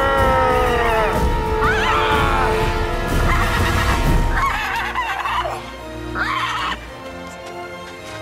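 Several drawn-out human yells and screeches, each sliding in pitch, over music with sustained notes. The cries stop near the end, leaving the music quieter.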